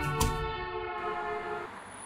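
A held chord of several steady tones, sounded over the last beat of rhythmic background music, stopping about one and a half seconds in.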